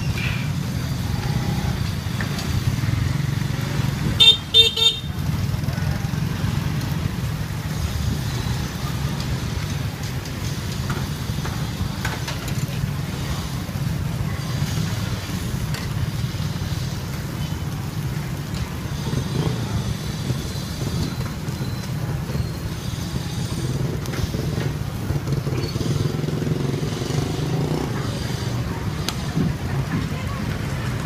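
Roadside street ambience: a steady low rumble of passing motor traffic, with a vehicle horn tooting twice in quick succession about four seconds in, and faint voices in the background.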